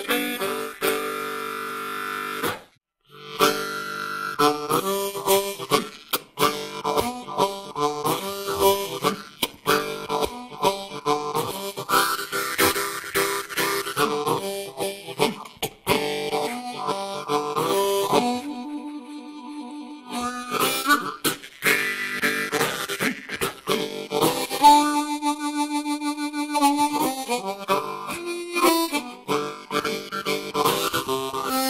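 Hohner Marine Band diatonic harmonica with brass reeds played solo in a traditional blues style: quick rhythmic runs of notes and chords, with a short break about three seconds in. Later come longer held notes, one near the end with a fast tremolo.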